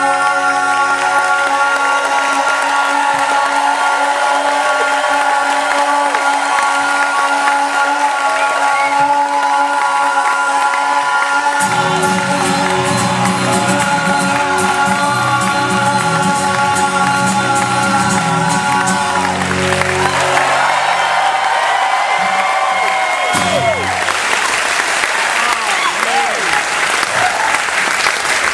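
Two male singers with an acoustic guitar holding a long sustained closing note of a live comedy song, with strummed chords joining partway through; the music stops about 23 seconds in and audience applause and cheering take over.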